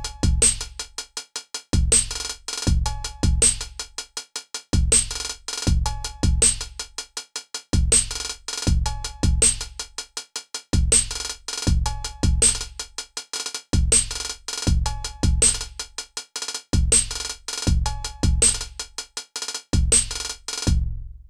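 Roland TR-6S drum machine playing a looping beat of bass drum kicks with fast closed hi-hat rolls, sub-step ratchets programmed onto single steps.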